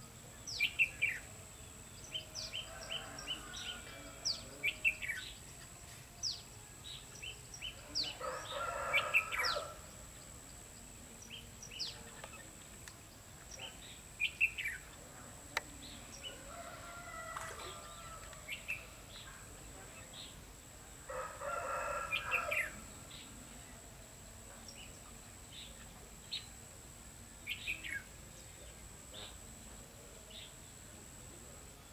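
Red-whiskered bulbuls calling with many short, sharp chirps scattered throughout. Two longer, louder calls of about a second and a half each stand out, about eight and twenty-one seconds in.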